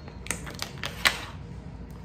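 Snap-on lid of a small plastic slime tub being pried off: a quick series of sharp plastic clicks and snaps, the loudest about a second in.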